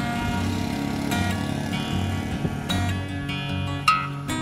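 Acoustic guitar background music, strummed chords with a low pulsing bass, with a brief sharp accent near the end.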